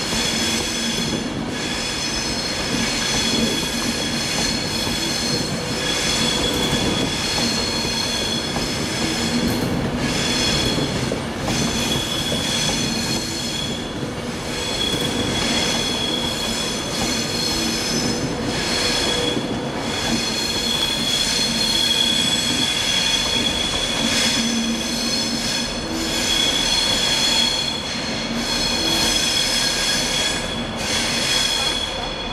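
Virgin Trains Class 390 Pendolino electric train moving slowly through the station, its wheels running with a steady high-pitched squeal that swells and fades over a continuous rumble.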